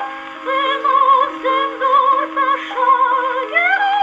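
A 1917 Victor acoustic phonograph playing a 1930s German song from a record: a singer's voice with vibrato in short phrases over steady accompaniment, rising to a held note near the end.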